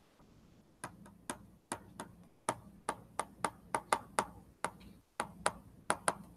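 A stylus tapping on a writing surface as words are handwritten: an uneven run of short, sharp ticks, starting about a second in.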